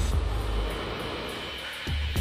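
Horror-film soundtrack music over a deep, steady rumble, with a sudden hit at the start and another near the end.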